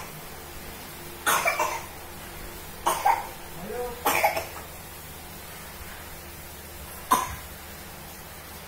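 A person coughing in short bouts, three in the first half and a single cough near the end, with a brief rising voiced sound in the middle.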